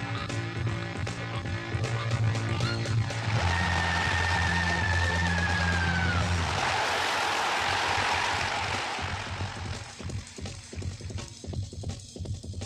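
Background music with held low notes and a high held tone that bends downward about six seconds in, followed by a swelling rush of noise that dies away around ten seconds, leaving sparser, quieter sounds.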